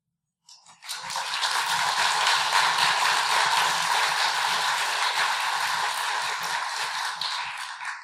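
Audience applauding, starting just under a second in, holding steady, then dying away near the end.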